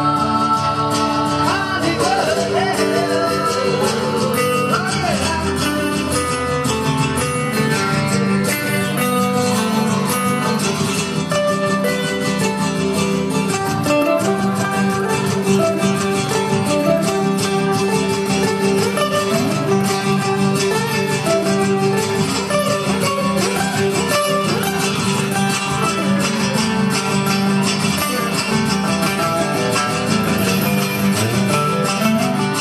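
Acoustic guitars playing an instrumental passage of a live country-rock song, steady and unbroken.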